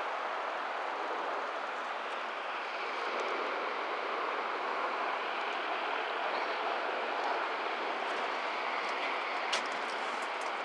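A steady rushing noise with no distinct tone, holding level throughout, and a faint click near the end.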